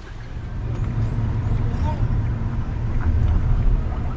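Car cabin noise: a low engine and road rumble that grows louder as the car moves off and gathers speed.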